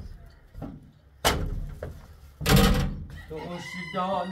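A rooster crowing about two and a half seconds in, after a sudden thump a little over a second in.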